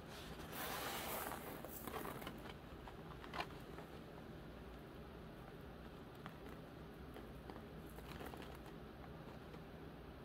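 Faint handling sounds: a short rustle about a second in, then scattered small clicks of crystal bicones and rose quartz chips being picked from the palm and of the wire, the sharpest click about three and a half seconds in.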